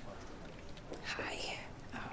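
A woman whispering softly to herself, a breathy stretch of about half a second that comes about a second in.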